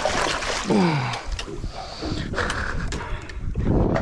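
Water splashing as a hooked Spanish mackerel thrashes at the surface beside the boat and is gaffed. Low knocks and thumps come near the end as the gaffed fish is hauled over the side.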